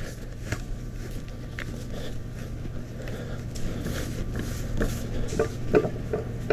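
Soft rustling and light handling of a cotton hoodie as it is laid on a heat press and smoothed flat by hand, with a few small clicks, over a steady low electrical hum.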